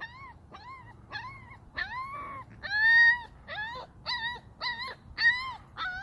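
Puppy crying on the leash: a run of short, high whines, about two or three a second, each rising and falling in pitch, the longest and loudest about three seconds in. It is crying in protest at being made to walk on the leash.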